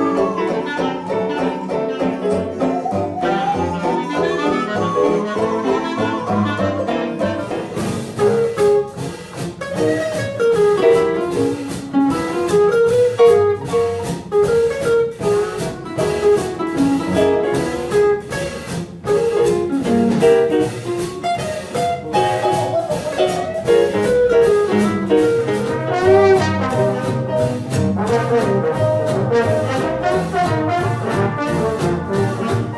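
A hot jazz combo plays live: clarinet and brass over piano, archtop guitar, double bass and drums. The opening is sparse, with a melody line sliding in pitch. About eight seconds in, the full band comes in with a steady beat.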